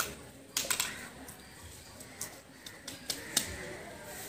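A run of short, sharp plastic clicks and taps from a small handheld tape dispenser being worked while taping newspaper strips, loudest in a quick cluster just after the start, then single clicks every half second or so.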